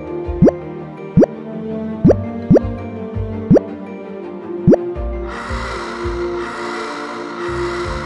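Six short bloop sound effects, each a quick upward-gliding plop, come at uneven intervals through the first five seconds over steady background music. From about five seconds in a pulsing hiss joins the music.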